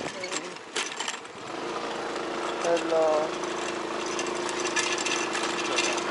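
Suzuki scooter's engine running at low speed with a steady hum, which comes in fuller about a second and a half in.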